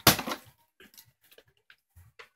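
Plastic water bottle with water in it landing hard on wood and the floor, a loud knock and clatter at the start, followed by several small faint knocks over the next second and a half as it settles.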